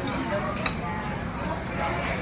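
Cutlery on plates at a dining table: a sharp clink about two-thirds of a second in, over a steady murmur of background voices.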